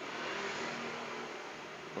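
Steady background noise of a motor vehicle engine running, with a faint low hum underneath.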